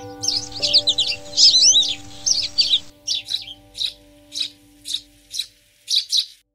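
Sparrows chirping in a series of single cheeps about two a second, with a burst of rapid twittering over the first three seconds. Soft sustained music notes play underneath and fade out in the second half.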